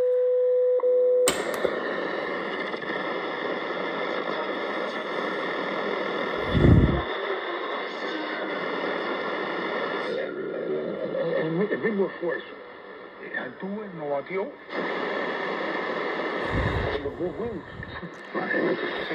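A Marc Pathfinder NR-52F1 multiband receiver's speaker while the shortwave dial is tuned by hand. A steady tone cuts off about a second in, and a sudden rush of static follows. Faint station audio and voices fade in and out of the noise.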